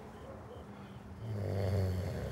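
A sleeping man snores, one low snore drawn in about a second in.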